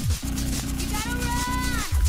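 Hard techno in a DJ set at a short break: the kick drum drops out and a low buzzing drone holds for most of two seconds. About halfway through, a higher pitched tone comes in and bends downward, and both cut off just before the end.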